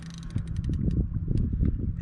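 Spinning reel being cranked to bring in a hooked gar: a fast run of fine clicks from the reel, then a low, uneven rumble of handling from about half a second in.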